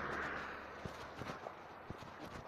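Street recording: the rushing noise of a passing car fading away, followed by a few scattered sharp clicks.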